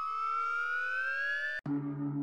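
Synthesised sound effect: a tone that glides slowly upward in pitch, then cuts off suddenly near the end and gives way to a low held note.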